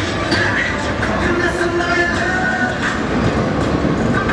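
Loud, steady city-street noise: a continuous rumble and hiss with a few faint tones over it.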